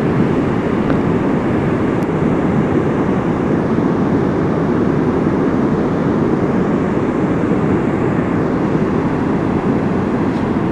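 Whitewater rapids of the Main Boulder River rushing through a narrow limestone gorge: a loud, steady rush of water, deepest and strongest at the low end.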